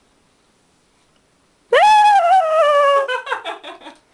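A loud, high-pitched wailing cry from a voice starts suddenly and slides slowly downward for about a second, then breaks into a quick run of short yelps.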